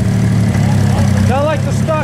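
Corvair 140 air-cooled flat-six with four single-barrel carburetors idling steadily.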